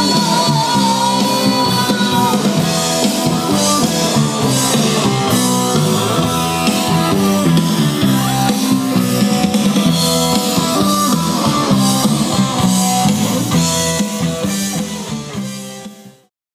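Live dance band playing an upbeat rock number on drum kit and guitar, opening on a long held high note. The music fades out over the last couple of seconds.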